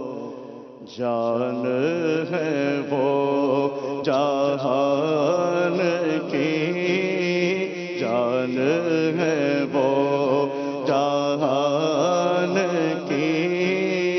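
A man singing an Urdu naat unaccompanied, in long held notes that waver and glide, over a steady low hum. The singing drops away briefly about a second in, then resumes.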